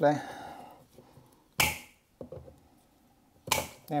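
Wire cutters snipping through the copper cores of electrical cable, trimming the ends fresh: a sharp snip about a second and a half in, a small click, and another snip near the end.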